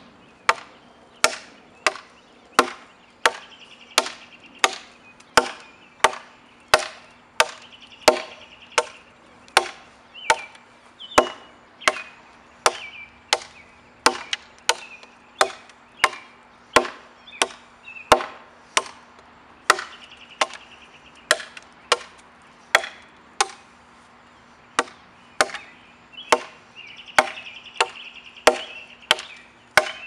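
Two large knife blades, one in each hand, chopping into a dead tree trunk: sharp wood-chopping strikes at a steady pace of about one and a half per second.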